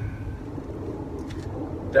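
Low, steady outdoor background rumble, with a few faint taps a little past a second in.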